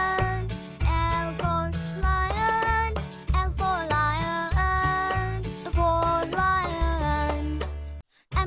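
Children's song: a child-like voice singing a melody over a backing track with a steady pulsing bass beat.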